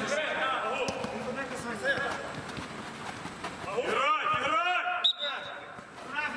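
Football kicked on artificial turf, with a sharp thump about five seconds in, among players' shouts inside an inflatable sports dome.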